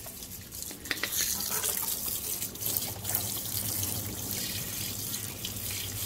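Water from a garden hose nozzle spraying and splashing over a car's engine bay, rinsing away spilled coolant. The spray picks up about a second in and then runs steadily.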